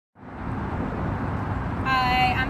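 Steady road traffic noise, an even low rumble that fades in over the first half second.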